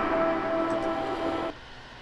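Background music from the played video: a held chord of a few steady tones that cuts off about one and a half seconds in.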